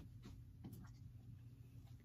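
Near silence: room tone with a low hum and a couple of faint light clicks about a second in.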